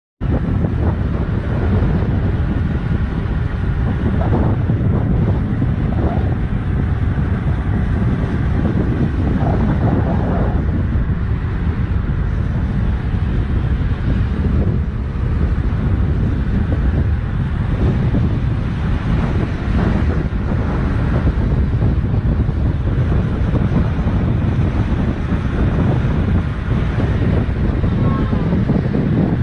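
Heavy wind buffeting on the microphone of a camera moving at cycling speed, a steady low rush.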